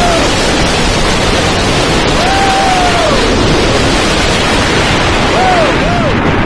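MaxxForce steel roller coaster train running at speed, heard from the front seat: a loud, steady rush of wind on the microphone over the roar of the wheels on the track. A few short rising-and-falling cries cut through, riders whooping.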